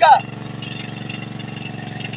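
A fishing launch's engine idling, a steady low drone with an even pulse.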